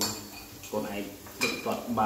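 Chopsticks and a spoon clinking against a metal hot-pot pan and a small bowl: a few sharp clinks, one at the start and a couple about one and a half seconds in, with talking between them.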